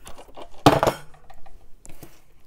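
A single hard plastic clunk about two-thirds of a second in, followed by a few light clicks: die-cutting equipment (the machine and its cutting-plate sandwich) being set down and handled on a wooden table.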